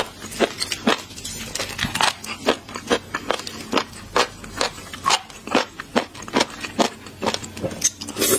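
Close-miked wet chewing and mouth clicks of someone eating raw shrimp, with an even rhythm of about two clicks a second.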